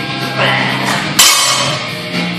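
A loaded 135 lb barbell with iron plates is dropped to the gym floor about a second in, landing with one loud metallic clang that rings on. Rock music plays underneath.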